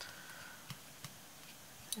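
A few faint, light ticks and clicks from hands working lace onto a glass bottle, with a brush and fingers, over quiet room tone.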